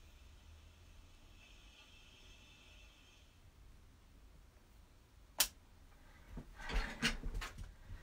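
Craft items being handled and set down on a tabletop: one sharp click about five seconds in, then a brief flurry of rustles and taps, over a faint low hum.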